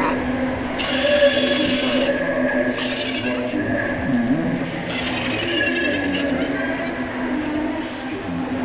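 A steady shower of coins dropping and clinking over a constant low tone, with a voice faintly mixed in.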